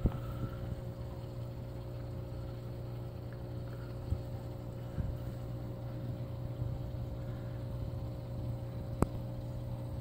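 Steady low electrical hum of an aquarium filter motor, with a faint higher tone above it and a few soft clicks.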